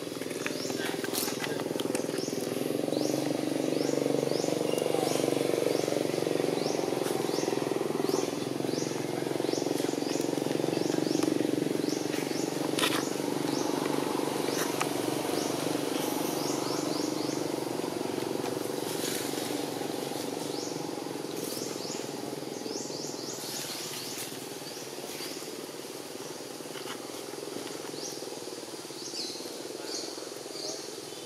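Outdoor ambience: a steady low murmur, louder through the first two-thirds and fading toward the end, under short high chirps that repeat about once or twice a second.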